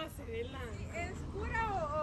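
Young people laughing in high, wavering voices.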